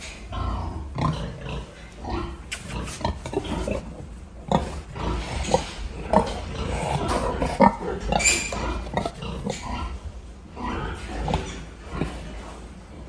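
Pigs grunting in a string of short calls, with one louder, higher-pitched call about eight seconds in.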